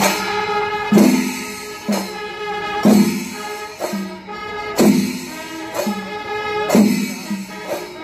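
Music with a steady beat: a loud struck accent about once a second over sustained pitched tones and lighter percussion.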